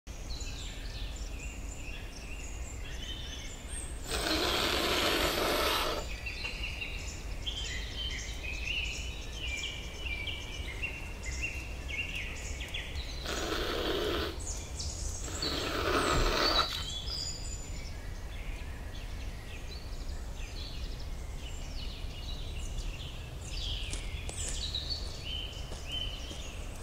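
Bushland ambience: many small birds chirp and call throughout over a low steady rumble. Three louder rushes of noise come through, the first about four seconds in lasting two seconds, then two shorter ones around thirteen and sixteen seconds.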